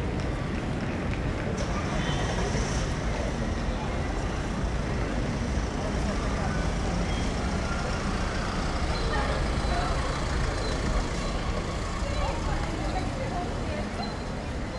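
Busy pedestrian shopping-street ambience: many passers-by talking at once over a steady low rumble.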